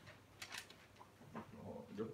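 Near silence in a small room, broken by a few faint, short clicks and rustles and a soft murmur near the end.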